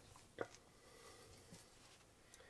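Near silence: faint room tone with a low steady hum, broken by one soft click about half a second in.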